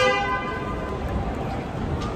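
A vehicle horn sounds once, a steady tone that fades out within about a second, over a background of outdoor noise.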